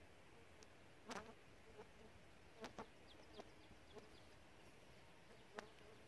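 Near silence: quiet outdoor ambience with three faint clicks and a few brief, faint high chirps.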